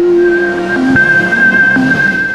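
Channel logo sting: electronic music of held, steady tones over a noisy whooshing swell.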